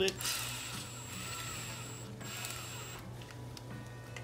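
Cordless drill motor whirring with a thin high whine, in two runs with a brief stop about two seconds in.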